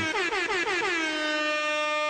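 An air horn sound effect: a brassy horn blast that warbles rapidly in pitch for about a second, then holds one steady note.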